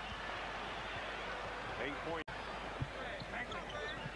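Arena crowd noise over a basketball being dribbled on a hardwood court, as heard on a TV game broadcast. The sound drops out for an instant a little past the middle at an edit.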